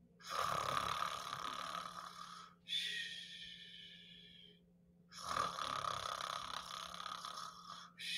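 Heavy, hissing breaths close to a microphone: three long breaths in turn, each two to three seconds, every other one higher and more whistly, with the next one starting at the very end.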